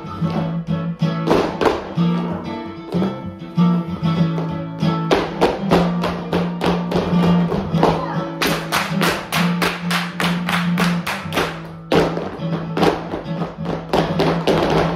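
Flamenco music for a soleá, with guitar and many sharp percussive strikes that grow denser about eight seconds in.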